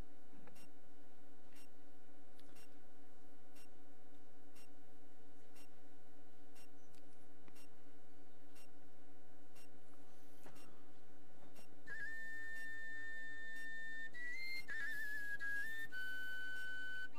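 Steady low room hum with faint regular ticking. About twelve seconds in, a high, pure whistle-like tone begins and is held as a few long notes that step up and down in pitch.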